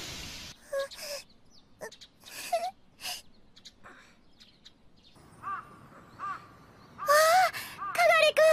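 Short high-pitched vocal sounds from cartoon children: brief gasps and small wordless voicings, then a loud high child's exclamation near the end. A hissing noise fades out at the very start.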